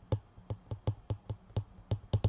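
Stylus tip tapping on a tablet's glass screen during handwriting: a quick, uneven run of light clicks, about five a second.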